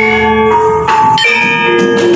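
Javanese gamelan ensemble playing: bronze metallophones and kettle gongs struck with mallets, a new ringing note about every half second, each note sustaining into the next.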